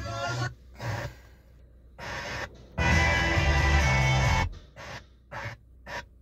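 Car radio playing music through the Kia K5's speakers while the tuning knob is turned: short snatches of different stations, each broken off by a brief mute, with one longer stretch of music in the middle.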